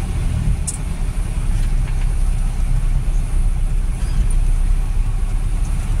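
Engine and road noise of a moving van heard from inside its cab: a steady low rumble.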